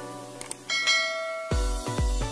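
Subscribe-animation sound effects: two quick clicks, then a bright notification-bell ding that rings for most of a second. Electronic music with a heavy bass beat starts near the end.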